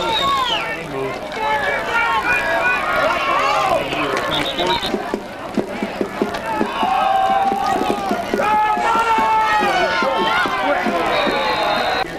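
Many spectators' voices at once, shouting and calling over one another from the stands, with a few sharp knocks near the middle.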